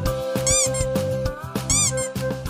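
A kitten mewing twice, short high-pitched mews, over background music with a steady beat.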